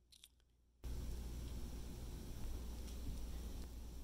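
Faint steady low hum and hiss of room tone, starting about a second in, with a few faint short clicks just before it.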